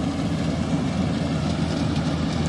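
Diesel engines of Yanmar rice combine harvesters running steadily while cutting rice, a constant low drone.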